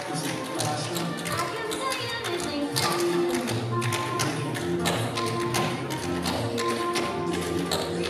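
Tap shoes striking a wooden stage floor in many quick, rhythmic taps as two dancers tap together, over show-tune backing music with held notes.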